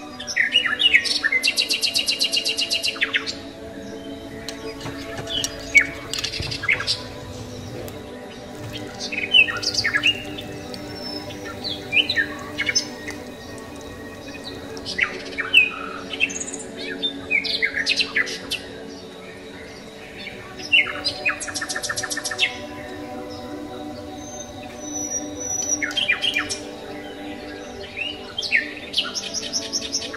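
Background music: a steady sustained chord with birdsong laid over it, short chirps and whistles every few seconds and rapid trills about a second in and again about 21 seconds in.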